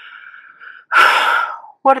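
A woman breathes in faintly, then lets out a loud sighing breath about a second in, followed by the start of a spoken word near the end.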